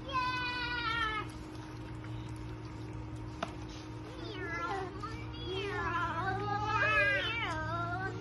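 A toddler's high-pitched squeals: one long falling squeal at the start, then a string of wavering squeals and whines through the second half.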